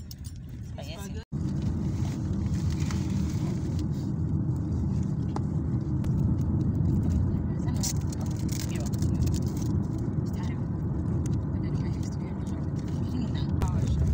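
Steady low rumble of road and engine noise inside a moving car, starting after a short cut about a second in.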